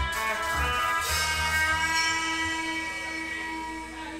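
Live rock band of electric guitar, bass guitar and drums, holding sustained notes that ring on and slowly fade as the song winds down.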